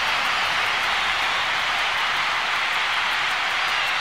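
Large concert crowd cheering and applauding at an even level, with no music playing.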